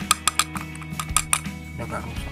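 Light metallic clicks and clinks, about ten in quick irregular succession, as metal parts are handled on an opened motorcycle engine.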